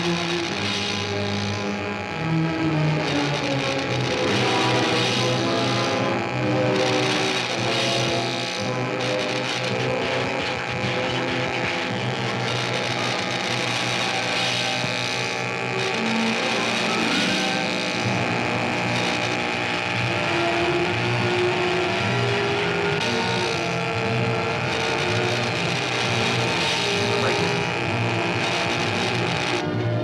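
Tense orchestral film score with shifting held notes, over a buzzing, crackling electrical effect that cuts in and out: high-voltage laboratory apparatus discharging current into a body.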